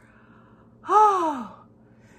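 A woman's single wordless, breathy vocal exclamation about a second in, lasting about half a second, its pitch rising briefly and then falling away.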